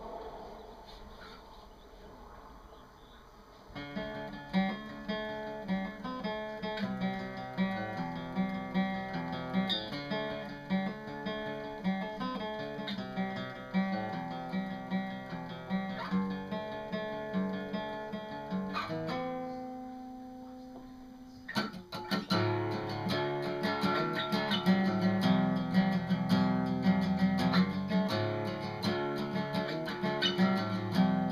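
Solo acoustic guitar. After a quiet opening it starts picking notes about four seconds in, lets a chord ring out and fade near the middle, then plays louder strummed chords from about twenty-two seconds.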